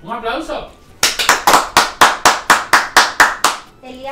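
A short round of hand claps, sharp and even at about five claps a second, starting about a second in and lasting some two and a half seconds.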